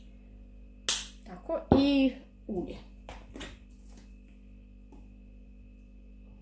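A person's sudden loud vocal bursts about a second in: a sharp explosive burst, then a short voiced sound with a wavering pitch and a second, shorter one, followed by a few faint breathy noises.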